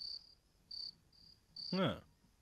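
Crickets chirping, short high chirps repeating about twice a second. A man says a single short word near the end.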